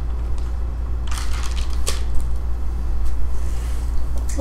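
A steady low hum with a few brief rustling, crackling noises, about a second in and again just before two seconds.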